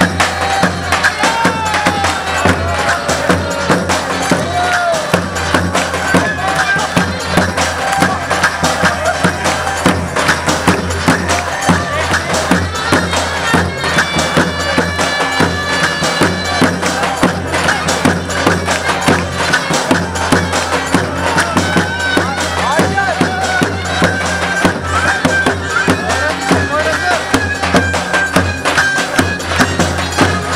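Turkish folk dance music: a davul bass drum beaten in a steady dance rhythm under a loud, shrill, wavering reed melody typical of the zurna.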